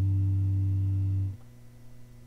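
Nine-string Esquire electric guitar through an amp, a low note ringing out and slowly fading, then muted abruptly about a second and a half in, leaving a faint steady amp hum.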